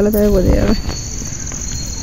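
A steady, high-pitched insect chorus, with a person's drawn-out voice fading out within the first second.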